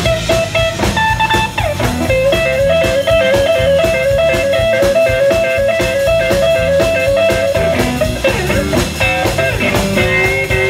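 A blues band playing live: electric guitars, bass guitar and drum kit. From about two seconds in to near the end, a lead line trills quickly back and forth between two notes.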